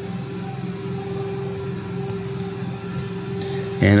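A steady low hum with one held mid-pitched tone, unchanging through the pause. A spoken word comes in at the very end.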